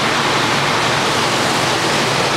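A steady, loud rushing noise like running water, starting suddenly.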